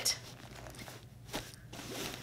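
Faint rustling and a few light clicks as a leather tote bag is handled and its zippered pockets are pulled open.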